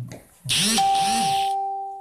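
A loud electronic-sounding chime: about half a second in, a hissing burst with a wavering tone under it, cut off suddenly a second later, while a steady held tone rings on briefly.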